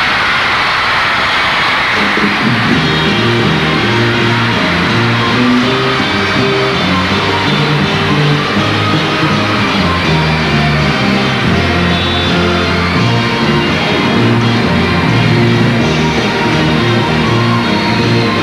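Live stage orchestra playing, with a stepping bass line that comes in about two seconds in, over a large crowd's applause and cheering. The applause is strongest at the start.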